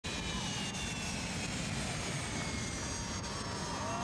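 Jet aircraft engines running, a steady rush with high whines that slowly fall in pitch.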